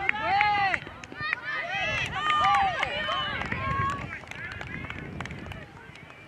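Several high-pitched voices of players and spectators shouting and cheering over one another, with a few sharp claps, as a goal is scored at a girls' soccer match; the shouts die down after about four seconds.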